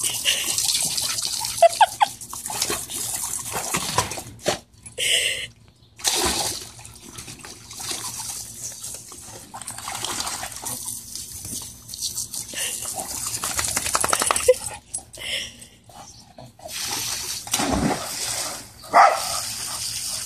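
Dogs barking now and then over the steady hiss of a garden hose spray nozzle and splashing water.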